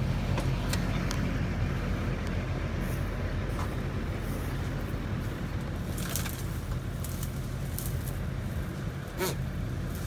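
Tow truck engine running at a steady speed while its winches pull a vehicle out of a ditch, with a few faint knocks midway and near the end.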